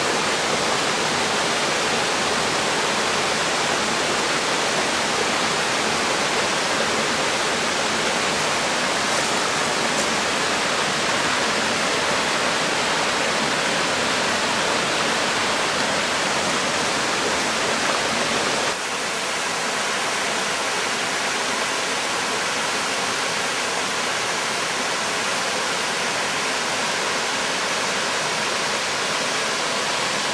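Steady rush of water from the cascades of Erawan Falls, a dense even roar. It drops a little in level and changes slightly about two thirds of the way through.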